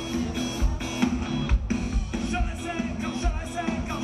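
Live rock band playing: drum kit with a steady kick beat, guitars and bass, and a voice singing over it from about halfway through.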